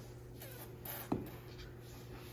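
Faint rubbing and rustling of sneakers and socks as children pull their shoes on, with one small tap about a second in.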